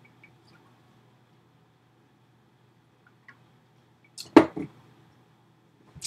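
A plastic drink tumbler set down on a desk: one sharp knock with a couple of smaller taps about four seconds in, over a faint steady hum.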